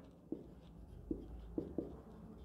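Faint marker-pen writing on a whiteboard, with a few light ticks from the pen strokes.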